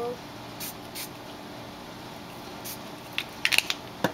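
Small fine-mist pump spray bottle of colour ink spritzed onto a rubber stamp in short hissy bursts: a couple in the first second, one past the middle, then a quick run of louder spritzes near the end.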